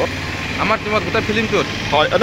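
A man speaking, over a steady low hum of traffic engines.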